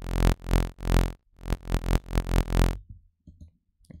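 Experimental freeform dubstep bass patch in the Vital software synthesizer playing a loop of short, buzzy notes with a deep sub-bass underneath, about seven hits, stopping abruptly about three-quarters of the way through. A few faint clicks follow.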